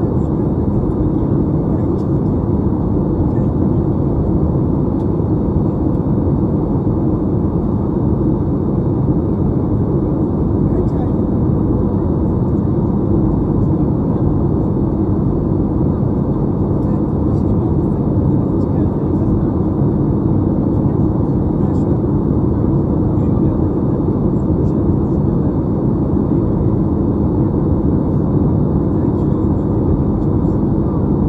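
Steady jet airliner cabin noise in flight: the even roar of engines and airflow, with a low steady hum.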